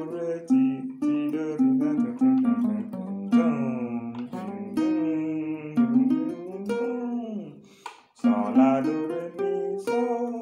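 Acoustic guitar playing a single-note highlife solo phrase that wraps up the solo. The notes change quickly, some slide or bend in pitch, and there is a short break just before the last phrase near the end.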